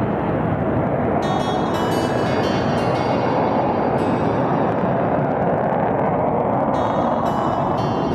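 Steady jet roar from low-flying Swiss Air Force F/A-18 Hornets, with background music laid over it.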